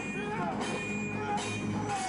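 Dramatic film-score music from a TV drama's sword-fight scene, with held and bending tones and several short, noisier bursts of fight sound.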